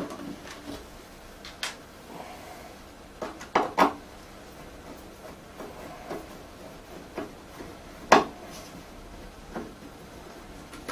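Scattered clicks and knocks of a screwdriver and screws being worked on the back amplifier panel of a speaker cabinet, a pair of knocks around the middle and the loudest knock about eight seconds in.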